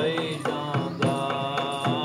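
A man singing devotional qawwali in long, held notes over the steady beat of a large drum struck with a stick.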